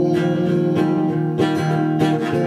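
Acoustic guitar strummed between sung lines, with four chord strokes at an even pace over about two seconds.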